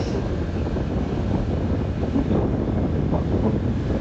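Wind buffeting the microphone of a phone carried on a moving scooter: a steady low rumble of rushing air, mixed with the scooter's running and road noise.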